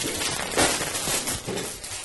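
Plastic food wrapping crinkling and rustling in irregular bursts as the loaf is handled and freed from it.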